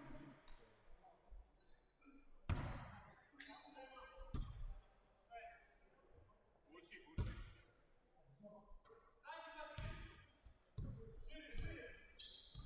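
Basketball bouncing on a hardwood gym floor, a handful of separate bounces echoing in the large hall, with players' voices calling out in the background.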